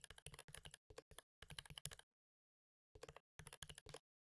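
Faint computer keyboard typing in quick runs of keystrokes, with a pause of about a second midway.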